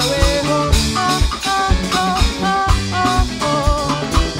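A band plays an instrumental passage: drum kit and djembe beat a steady rhythm under acoustic and electric guitars, with a wavering melody line above.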